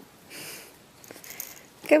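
Two soft breaths or sniffs, the first about half a second in and a fainter one about a second later. Then a voice starts to speak right at the end.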